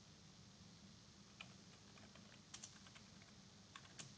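Faint computer keyboard typing: a few scattered key clicks, most of them bunched in the middle, over near silence.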